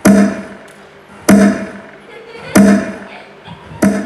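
Four loud, evenly spaced thuds about a second and a quarter apart, each followed by a short pitched ring, like heavy drum or stage sound-effect hits.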